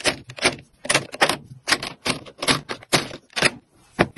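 Small capped bottles being set down one after another into a plastic drawer organizer: a quick, even series of sharp clacks, about three a second.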